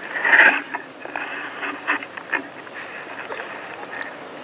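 Handling noise from a stand microphone being repositioned: a short loud burst of noise about half a second in, then scattered clicks and scraping.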